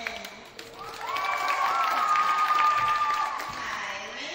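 A crowd in a gymnasium applauding and cheering. About a second in, a long high-pitched shout from several voices rises and holds for about two seconds before fading.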